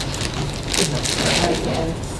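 Indistinct, mumbled speech from people around a meeting table, starting a little under a second in, over a steady crackling background noise.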